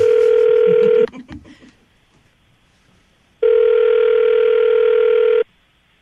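Telephone ringback tone on an outgoing call, ringing twice: each ring is a steady tone about two seconds long, with about two seconds of near silence between them.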